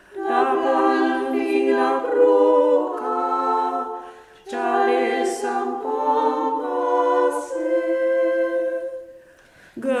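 A small group of women singing a traditional folk song a cappella in harmony, in long held phrases with a short break about four seconds in and another near the end.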